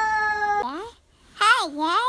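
Small child's high-pitched vocalizing, not words: a long held 'ooh' that sags slightly and ends in an upward slide. After a short gap comes a brief wavering, up-and-down squeal.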